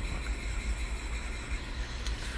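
Steady low rumble with a faint hiss, background noise with no distinct event.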